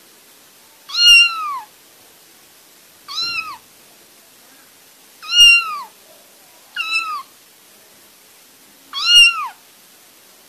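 Kitten meowing five times, a high, short meow every couple of seconds, each one bending down in pitch at its end.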